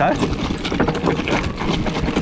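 Orbea Rise mountain bike rolling down a trail of loose stones: tyres crunching over the rock with a continuous clatter of many small knocks and rattles from the bike.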